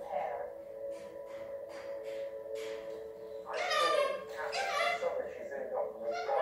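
A pet galah chattering in soft, speech-like babble, with a louder run of calls just past the middle. A steady low hum runs underneath.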